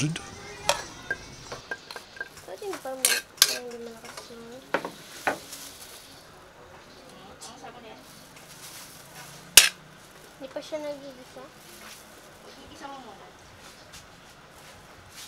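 A spatula knocking and scraping against a metal wok as quartered red onions are pushed in and moved about, over a faint sizzle of them frying. A single sharp clink about ten seconds in is the loudest sound.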